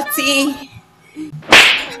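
A single sharp slap on a bare cheek about one and a half seconds in, the loudest sound here, after a short vocal exclamation.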